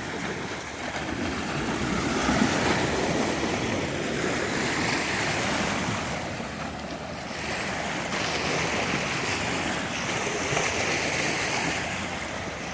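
Loud, steady rushing noise that swells and eases over several seconds, without clear tones or strikes.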